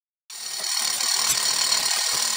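Hand-held hammer drill boring into a concrete support column of a cooling tower with a long bit, running steadily. It starts about a third of a second in, after a brief silence.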